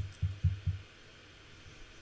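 Four soft, dull taps on a computer keyboard in the first second, then faint room tone.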